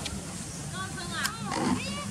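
A long-tailed macaque infant nursing on its mother gives a few short, high-pitched squeaks that rise and fall, over a low steady background murmur.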